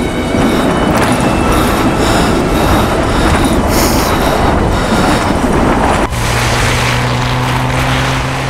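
A Hyundai SUV driving hard through deep snow: a loud, dense rush of engine, tyres and thrown snow. About six seconds in it cuts off sharply and gives way to a steady low hum.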